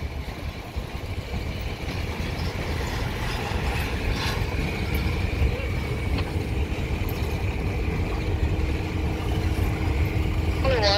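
Diesel locomotive engine running close by: a steady low rumble, with a steady hum joining in about halfway through.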